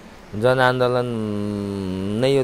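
A man's speaking voice: a brief pause, then a drawn-out vowel held at one steady pitch for about a second, a hesitation sound in the middle of talk.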